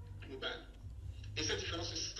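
A man speaking in short phrases over a video-call link, with a steady low hum underneath.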